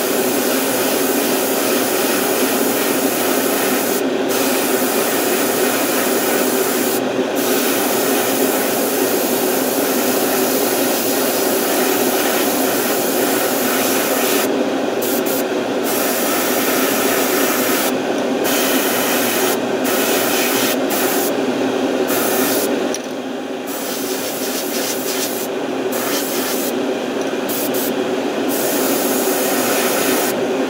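An airbrush spraying paint in long bursts, its hiss cutting out briefly a dozen or so times as the trigger is let off and pressed again. A steady hum runs underneath.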